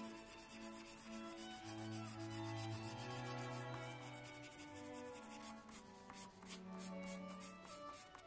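Graphite pencil shading on sketch paper: quick short rubbing strokes, coming faster in the second half. Soft background music with long held notes plays under it.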